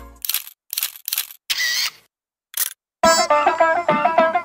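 Camera shutter clicks: five short, sharp clicks with silences between them, the fourth one longer. About three seconds in, plucked-string music with a steady rhythm starts.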